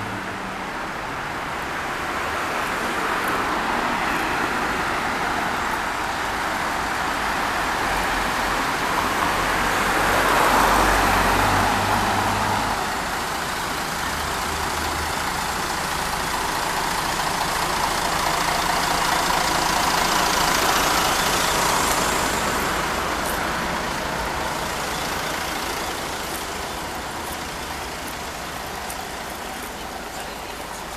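Road traffic on a city street: a steady wash of passing vehicles, swelling as heavier vehicles go by about ten seconds in and again about twenty seconds in.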